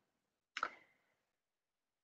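Near silence, broken once about half a second in by a short, sharp click.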